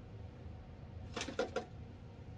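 A plastic scoop scraping through damp potting soil in a plastic tote: three short scrapes in quick succession a little past a second in.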